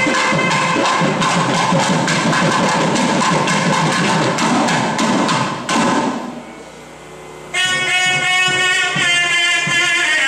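Nadaswaram and thavil temple ensemble playing: a fast run of thavil drum strokes under the nadaswaram's reedy melody, breaking off about six seconds in. It resumes with the nadaswaram holding long, slightly bending notes over sparser drum strokes.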